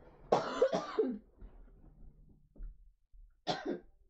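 A woman coughing from a lingering cough: two harsh coughs about a third of a second in, then another short cough near the end.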